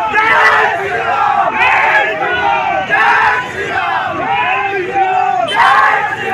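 A crowd of men shouting together, with louder shouts rising out of the din every second or two.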